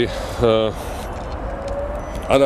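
A man's voice speaks one short phrase about half a second in, then pauses, leaving a steady low outdoor rumble of distant city traffic.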